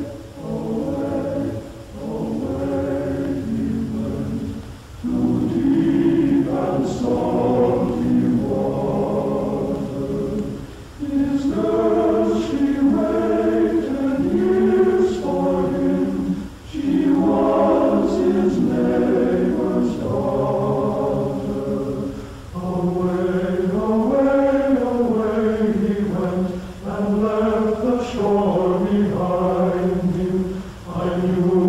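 Choral music: a choir singing a slow melody in phrases of several seconds each, with short breaks between them.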